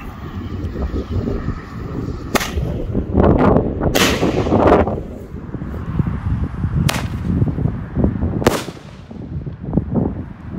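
Airbomb fireworks going off: four sharp, loud bangs about a second and a half to three seconds apart, the second one trailing off in a longer rushing noise, over a steady low rumble.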